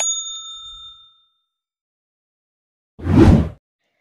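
Subscribe-animation sound effects: a click and then a bell ding that rings out over about a second, the notification-bell cue. After a gap of silence, a short whoosh comes about three seconds in.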